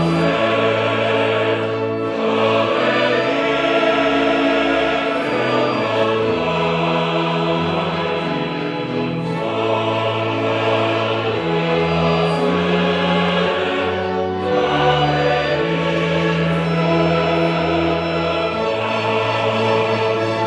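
Opera chorus singing with orchestra: full, sustained chords over long held bass notes that shift every second or two.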